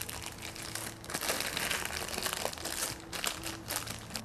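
Clear plastic bag crinkling as it is handled and pulled around a bouquet's cut stems. The crinkling is irregular and goes on throughout.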